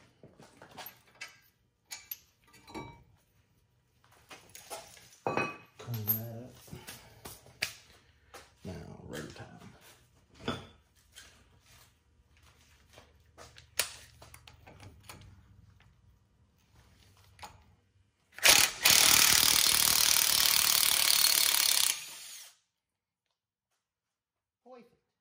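Steel brake parts and tools being handled during a front brake job: scattered clicks and knocks of metal on metal. Near the end comes a loud, steady hiss lasting about three and a half seconds, which then cuts off.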